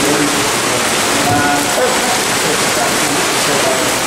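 A loud, steady rushing noise, even and unbroken, with faint voices under it.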